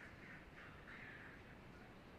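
Near silence: faint background hiss of the broadcast feed.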